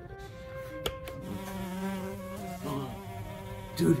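A fly buzzing: a steady hum that starts a little over a second in and wavers briefly before settling again.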